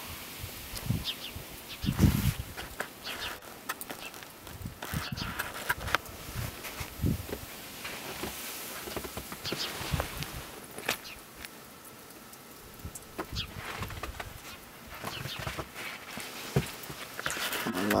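Footsteps in deep snow and camera handling: scattered, irregular soft thumps and crunches with short clicks.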